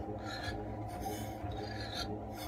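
Rhythmic rasping swishes about every three-quarters of a second over a steady low hum, the sound of a man working out on a cardio machine with the phone held close.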